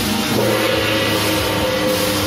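Loud music with sustained notes over a dense wash of sound.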